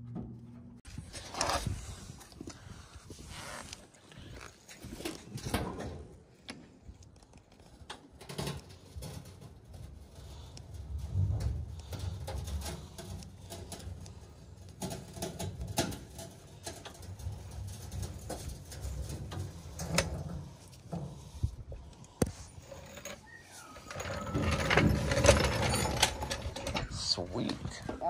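Scattered knocks and clunks from a floor jack and a fuel tank being handled under a truck, with low, indistinct talk. A louder stretch of scraping and handling comes near the end.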